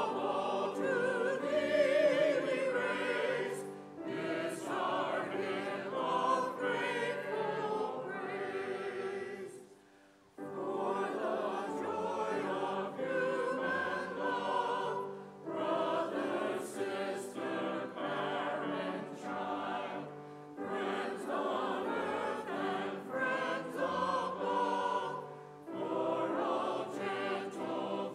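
A church choir and congregation singing a hymn with steady low accompaniment, in phrases separated by short breaks; the sound drops away almost to silence briefly about ten seconds in.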